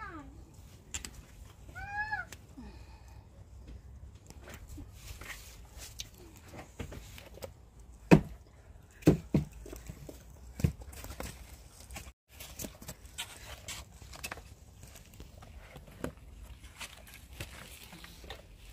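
Pruning secateurs snipping tomato stems: sharp clicks, a few of them close together about eight to eleven seconds in, over a steady low rumble. A short high-pitched call sounds about two seconds in.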